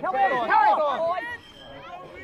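Loud, high-pitched shouting from voices at a youth football match, lasting about the first second and a half, then dropping to faint background chatter.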